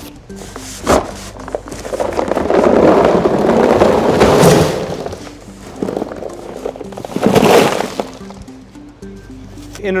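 Pelletized dry ice poured from a cardboard box into a styrofoam shipping cooler: a dense rattle of pellets for about three seconds, then a second, shorter pour. A single knock comes about a second in. Background music plays throughout.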